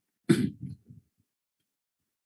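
A person clearing their throat once: a short, sudden burst about a quarter second in that quickly dies away.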